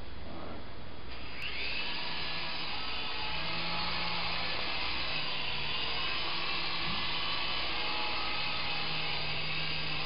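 Syma S107G micro RC helicopter's coaxial rotors and small electric motors spinning up about a second and a half in, then a steady whir as it takes off and flies.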